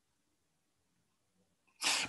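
Near silence in a pause between spoken sentences, then, near the end, a short sharp intake of breath as a man's voice resumes.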